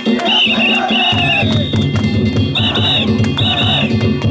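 Danjiri festival music (narimono): a high, ornamented piping melody over sharp, repeated metallic gong strikes, with drumming that comes in about a second in.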